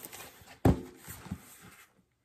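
Cardboard shipping box being handled: one sharp thump a little over half a second in, followed by light tapping and rustling, cutting off suddenly near the end.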